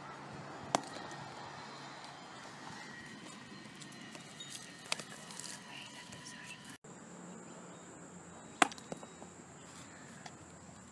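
Handmade mud bricks dropped from about three feet onto a concrete path in a strength drop test, hitting with sharp knocks: one about a second in, one near five seconds and a louder one near nine seconds, over steady outdoor background noise. These are failed drops, the bricks breaking apart.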